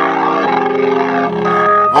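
Keyboard holding sustained chords between the sung lines of a gospel hymn, moving to a new chord twice.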